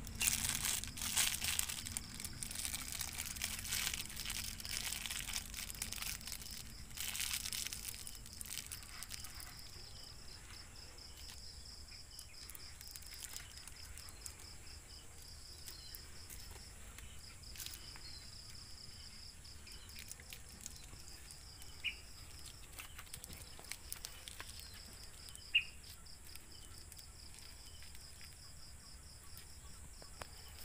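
Thin plastic bag crinkling and rustling as it is handled in the hands, dying away after about nine seconds. After that an insect trills steadily in the background in a fast, even pulse, with two brief sharp clicks late on.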